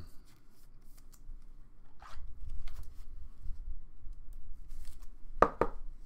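Trading card and plastic card holder being handled: light plastic clicks and rubbing as the card is slid into the holder, with two sharper clicks near the end.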